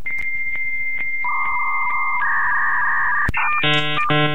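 Dial-up modem handshake: a steady high answer tone with a click about every half second, joined after about a second by hissing data tones. Near the end the tones give way to a chord of many tones, the sound of the modem negotiating a connection over a telephone line.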